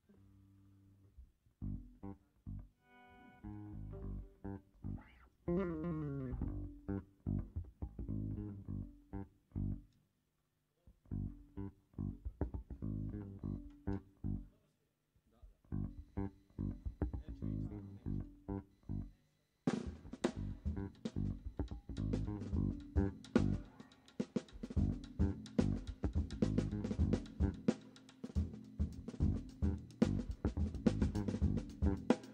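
Live jazz trio opening a tune: electric guitar and electric bass play a sparse, stop-start plucked line with short pauses and no drums. About twenty seconds in, the drum kit comes in with cymbals and the full trio plays on together.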